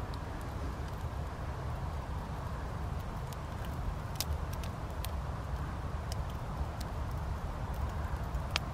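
Small stick fire crackling, with scattered sharp pops at irregular intervals, over a steady low rumble of light breeze on the microphone.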